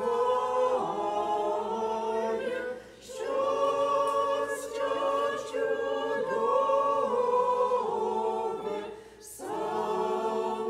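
A church congregation singing a hymn together in long phrases, with short breaks between lines about three seconds in and again near the end.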